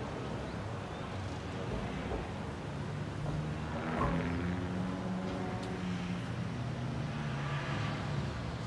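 Low, steady engine hum of traffic in the town below, swelling about halfway through as a vehicle passes and then settling again.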